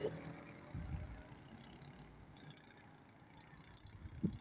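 Faint road traffic: a low vehicle rumble that is strongest about a second in, then thins to a quiet street hum.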